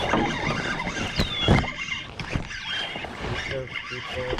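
Close handling noise from an angler fighting a hooked fish with a spinning rod in a canoe: his arm and clothing rub against the microphone, with irregular knocks and a couple of heavier thumps about a second and a half in. A short high falling whistle repeats about three times.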